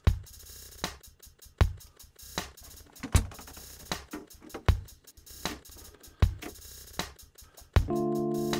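A sampled drum loop from drum hits split out of a song plays back as a step-sequenced pattern. A heavy low hit lands about every second and a half, a lighter hit falls midway between, and quicker hi-hat ticks fill the gaps. Near the end, a sustained electric piano chord comes in over the beat.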